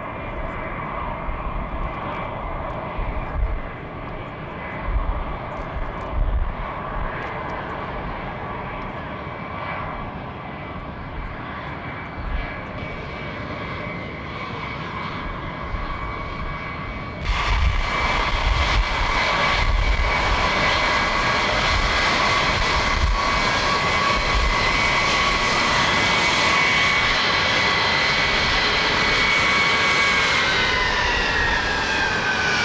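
Air Force One, a Boeing VC-137C, with its four turbofan engines whining steadily over a low rumble as the jet taxis. About 17 seconds in, the engine noise turns suddenly louder and brighter.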